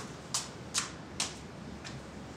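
Footsteps climbing a staircase: a run of sharp, light clicks, a little over two a second at first and slowing slightly.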